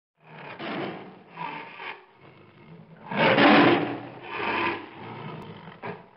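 Tiger growling and roaring, a run of about five rough bursts with the loudest about three seconds in.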